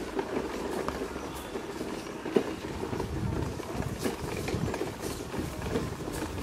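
Wheelchair wheels rattling over cobblestone paving, a continuous jittery clatter, with one sharper knock a little over two seconds in.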